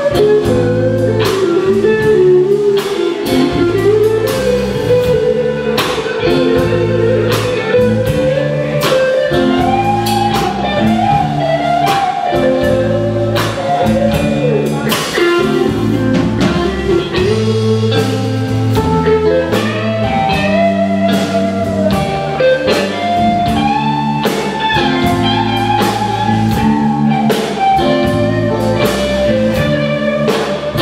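Live blues-rock band playing an instrumental passage: electric guitars, bass and drum kit keep a steady beat while a lead line slides and bends between notes.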